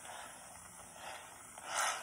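Aerosol can of shaving cream spraying foam out in a steady, faint hiss, with a short louder rush near the end.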